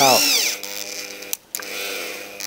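Corded Reaim 500 W impact drill in plain drilling mode, turned down to its weakest setting, driving a screw into a wooden board: a steady motor hum that runs sluggishly under the load. It cuts out briefly about one and a half seconds in, then runs on.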